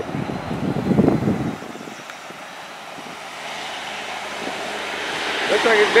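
A passing vehicle: a low rumble in the first second or so, then a hiss that swells steadily louder toward the end.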